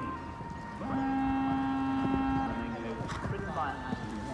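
Distant voices, with a single steady pitched tone held for about a second and a half near the middle.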